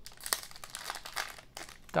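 Panini Donruss Optic trading-card pack being torn open by hand, its foil wrapper crinkling irregularly with a few sharp crackles.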